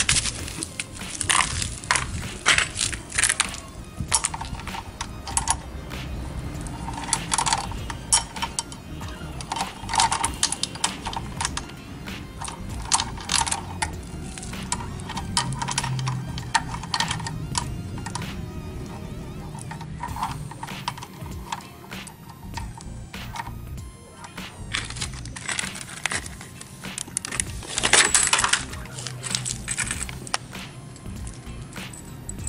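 Links of a used motorcycle drive chain clinking and jangling, again and again, as the chain is handled around the front wheel, with background music under it.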